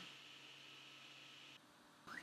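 Near silence: a faint hiss that cuts out to dead silence about a second and a half in.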